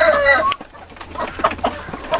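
A rooster's crow falls in pitch and ends about half a second in, followed by quieter short clucks from the flock of chickens feeding.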